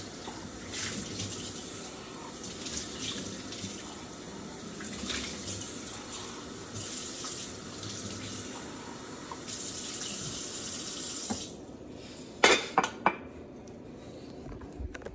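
Kitchen faucet running into a stainless steel sink while a mug is rinsed under the stream, the water splashing off the cup and into the basin. The water stops near the end, followed by three or four sharp knocks.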